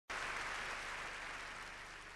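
Theatre audience applauding, the applause slowly dying down.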